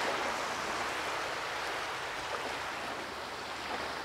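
Steady rushing outdoor noise of lake waves and wind at the shore, with no voices.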